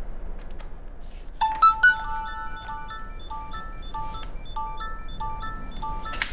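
A mobile phone ringing with a melodic ringtone: a loud opening chord about a second and a half in, then a quick tune of short repeated notes that keeps going.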